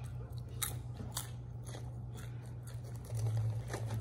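Crunchy snack of popcorn and Flamin' Hot Cheetos being chewed close to the microphone, in irregular crunching bites over a low steady hum.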